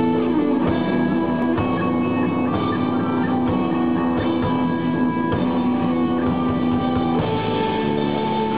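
Live rock band playing an instrumental passage: two electric guitars hold chords over a drum kit, and the chord changes about seven seconds in.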